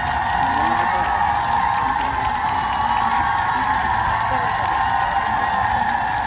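Steady outdoor ambience of a busy pedestrian street: a constant hiss with faint voices of people nearby.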